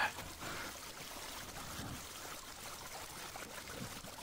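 Water trickling steadily through a culvert pipe that is still mostly clogged with beaver-dam debris.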